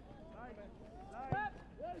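Faint, broken commentary speech from a football commentator over outdoor pitch ambience, with one brief knock a little over a second in.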